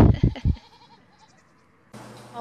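A loud, low buffeting rumble in the first half second, like wind or handling on the microphone. Then a faint goat call, and the sound fades out about a second and a half in.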